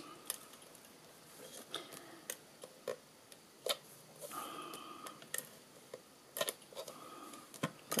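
Faint, scattered clicks and a few short strokes from a Stampin' Seal tape-runner adhesive dispenser as it is pressed and rolled along the back of a cardstock panel.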